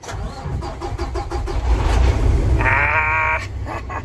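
Peterbilt semi-truck's diesel engine cranking on the starter, catching after about a second and a half, then running with a deep rumble that grows louder as it comes up to idle. A short pitched tone sounds about three seconds in.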